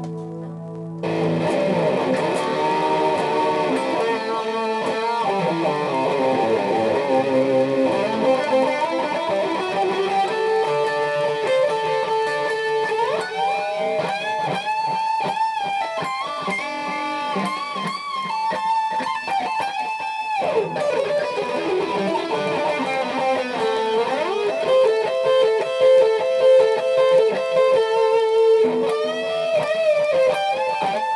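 Schecter C-1 Classic electric guitar played through a Boss GT-8 multi-effects unit into a Marshall AVT275 combo amp, wired by the four-cable method. It plays a lead line of sustained notes with string bends and vibrato, growing louder about a second in.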